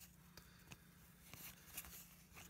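Faint flicking and rustling of cardboard 1970s Topps baseball cards being flipped through by hand, a few soft ticks spread over the two seconds.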